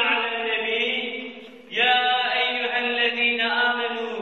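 A man's voice chanting an Arabic passage of a Friday sermon (hutbe) in melodic style, with long held notes. A short pause for breath a little over a second in, then a new phrase.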